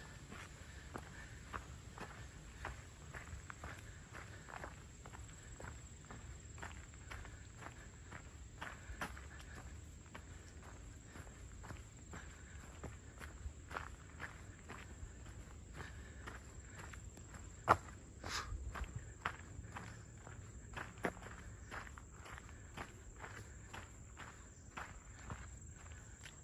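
Footsteps of a hiker walking at a steady pace along a dirt trail covered in dry leaf litter, with one sharper, louder snap about two-thirds of the way through.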